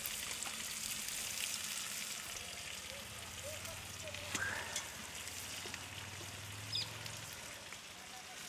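Marinated chicken pieces sizzling in a hot, steaming clay pot: a steady hiss with scattered crackles and pops.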